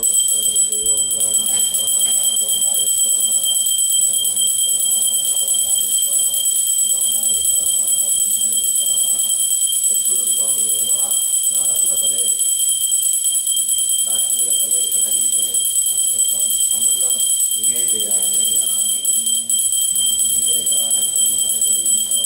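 Voices chanting Sanskrit mantras in a steady recitation, with a high ringing tone held throughout, as from a puja hand bell rung continuously.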